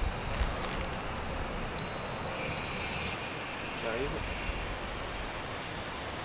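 Two short, high electronic beeps, each about half a second long and less than a second apart, from the tablet controlling a whole-body electrostimulation suit as the session is set up. They sound over steady outdoor background noise.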